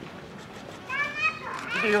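A young child's high voice calling out briefly about a second in, with a man's speech starting just before the end.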